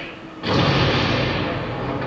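An explosion on a war film's soundtrack, heard through a screen's speakers: a sudden blast about half a second in, then a deep rumble that fades slowly.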